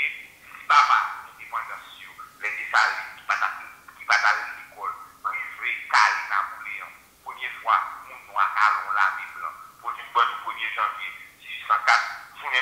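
A person speaking continuously, the voice thin-sounding with little low end.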